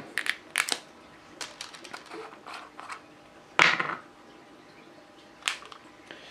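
A small black plastic screw-top jar and its lid being handled on a wooden table: scattered light clicks and knocks, with one loud short scrape a little past halfway and a last knock near the end.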